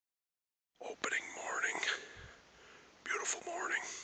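A man whispering two short phrases, the first starting about a second in and the second near the end.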